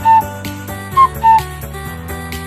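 A two-note whistle, high then lower, sounded twice about a second apart over background music. It is much louder than the music.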